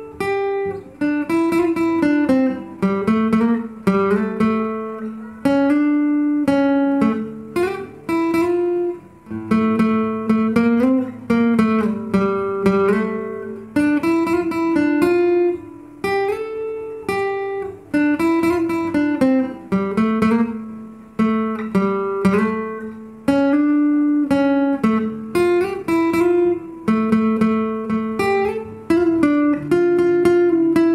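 Solo cutaway acoustic guitar played fingerstyle: a plucked melody over bass notes, each note starting crisply and ringing out before the next.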